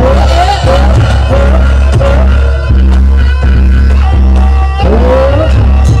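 Live Javanese jaranan ensemble music, played loudly: repeated drum strokes under a melody that bends up and down in pitch, over a steady low hum.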